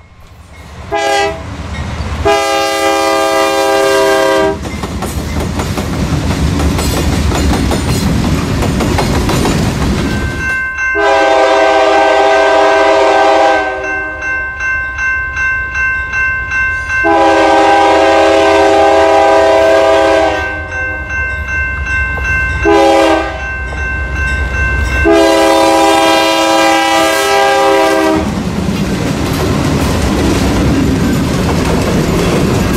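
Diesel freight locomotive air horn. Near the start it ends one signal with a short blast and then a long one. After several seconds of low engine rumble it sounds the grade-crossing signal in full, two long blasts, a short one and a long one, as the train approaches. Near the end the locomotives' rumble and wheel clatter go by close.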